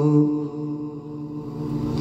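A man chanting an Urdu elegy (nauha): a long held note ends about a third of a second in, then a lull with only faint sound.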